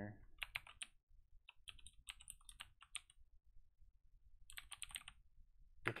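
Computer keyboard typing, faint: three quick runs of keystrokes with short pauses between them.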